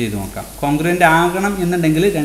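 A voice speaking, with a short pause about half a second in.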